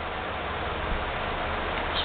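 Steady background hiss with a low hum: room tone, with no distinct sound standing out.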